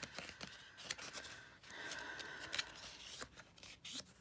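Pages of a paperback sticker book being flipped through by hand: a run of quick, crisp papery flicks and rustles.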